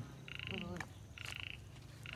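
A frog calling: two short rattling trills about a second apart.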